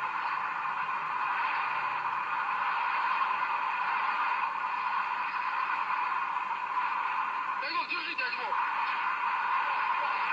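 A steady, tinny hiss with an indistinct murmur in it, and a short voice-like sound about eight seconds in.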